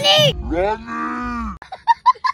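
A long, low, drawn-out call for about a second, its pitch rising and then falling. Near the end comes a small child's quick, high laughter.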